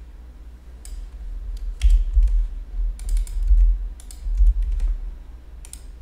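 Computer keyboard typing: scattered, irregular keystrokes and clicks, several with a low thud.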